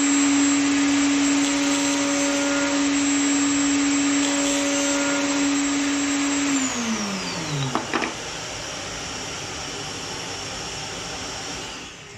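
Table-mounted router with a flush-trim bit, guided by a template, switched on and running at a steady high whine while rounding the corner of a wooden board. It is switched off about six and a half seconds in and winds down with a falling pitch. A quieter steady rushing noise goes on after it until near the end.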